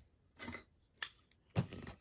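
Faint brief handling sounds: a short rustle about half a second in, a single click near the middle, and a soft knock with a little scrape near the end.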